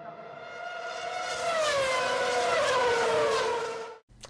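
Intro sound effect under an opening title: a synthesized chord of several tones swells up from quiet, its pitches gliding slowly downward, then cuts off suddenly.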